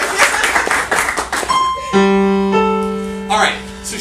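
Applause and clapping fade out, then a grand piano sounds three single notes one after another, about a second and a half, two and two and a half seconds in: the three notes picked for an improvised riff. The notes are held and ring on, slowly fading, with a brief voice near the end.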